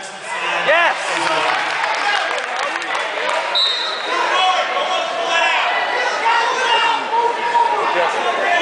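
Spectator crowd in a gymnasium: many overlapping voices calling and shouting, with occasional dull thuds and a brief high steady tone about three and a half seconds in.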